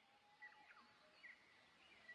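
Near silence, with a few faint, short high-pitched tones.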